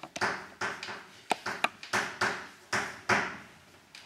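Chalk writing on a blackboard: a quick run of sharp taps and short scratchy strokes, about three a second, dying away near the end.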